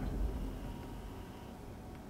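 Low, steady background rumble inside a car cabin, with no distinct clicks or other events.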